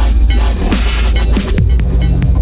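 Instrumental stretch of a dubstep remix: a constant heavy sub-bass under punchy kick-drum hits that drop in pitch, with distorted synth noise on top and no vocal.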